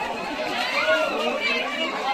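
Crowd of adults and children chattering and calling out over one another.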